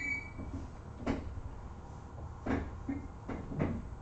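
Four separate knocks and clunks: one about a second in, one midway, and two close together near the end, over a steady low room hum. A short high tone fades out at the very start.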